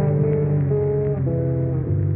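Instrumental hip-hop beat: a muffled melody of sustained notes changing about every half second over a steady bass line, with the high end cut off.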